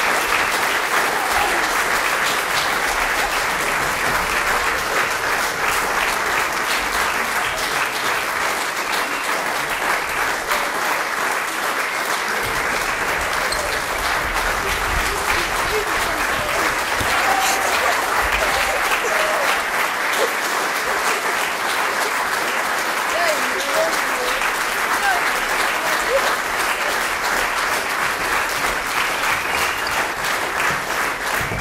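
Audience applauding steadily: dense, continuous clapping from a full hall, with a few voices calling out in the middle.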